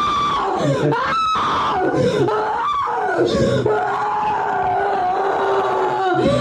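A woman screaming and groaning in an exorcism recording, her voice sliding up and down in pitch, then settling into one long held wail for the last couple of seconds. The recording is presented as a real exorcism of a woman said to be possessed, whom doctors had diagnosed with schizophrenia.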